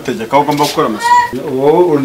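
Speech: people talking, with a high-pitched, drawn-out vocal sound about a second in.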